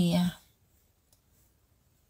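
The end of a spoken word, then near silence with one faint click about a second in.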